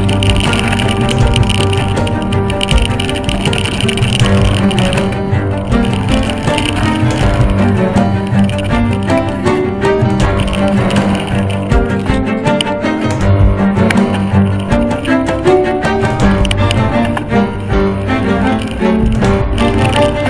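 Background music with a sustained low bass line and held notes changing in steps.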